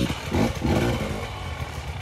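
Enduro dirt bike engine giving two short throttle blips about half a second in, then running at low revs with a rough, uneven note as the bike picks its way down a steep rocky trail.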